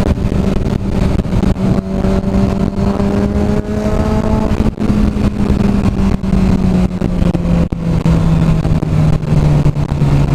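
Sport motorcycle engine running at steady cruising revs under heavy wind buffeting on the helmet camera's microphone. Over the last few seconds the engine note drops as the rider eases off the throttle to slow down.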